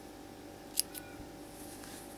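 Scissors snipping the yarn about a second in: a sharp click with a fainter one just after, over a faint steady hum.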